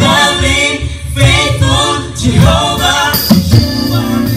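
A man singing a gospel song into a handheld microphone, the voice carried through a PA. A little after three seconds in, steady held instrument notes come in under the voice.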